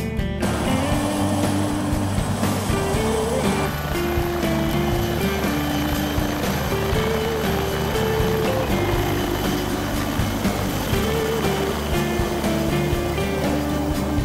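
Background music with a melody laid over a dense, steady noise. The noise is a helicopter's engine and rotor running as it lifts off and flies overhead.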